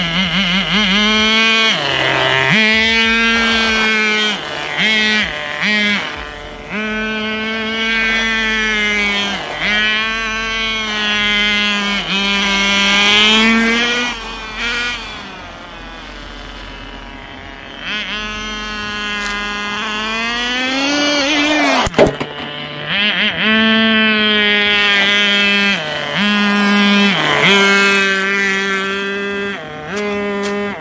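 Small nitro glow engine of a Tamiya TNS-B radio-controlled car running at high revs, its pitch dipping briefly and coming back several times, with a quieter stretch about halfway and a rising rev that ends in a sharp knock about two-thirds of the way in. The engine has not finished its break-in and is not yet tuned.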